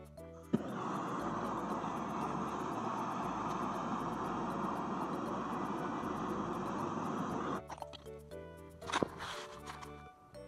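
Gas-cartridge blowtorch lit with a click about half a second in, then a steady rushing flame played on wood for about seven seconds before it cuts off suddenly. A short burst of sound follows near the end.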